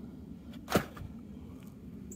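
An empty plastic nursery pot being handled, knocking once with a short, sharp thud about three-quarters of a second in.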